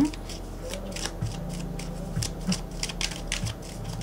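Light, irregular clicking and rustling, several clicks a second, over a low steady hum.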